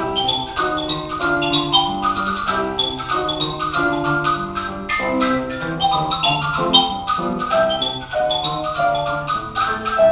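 Xylophone played with mallets in a fast, continuous run of struck notes, some ringing on under the quicker strikes.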